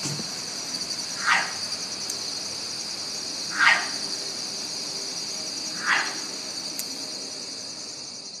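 Three short barking calls, evenly spaced about two seconds apart, over a steady high chorus of night insects: a field recording that the recordist takes for a mountain lion's 'cat bark', though he first took it for an owl.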